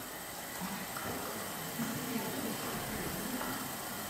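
Hand-cranked influence machine (electrostatic generator) running with a steady, low mechanical sound. It is building up a very high voltage on the capacitor plates.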